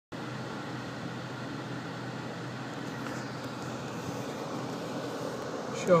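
Tesla Model S air conditioning running at full power inside the cabin: a steady rush of air with a faint, even low hum underneath.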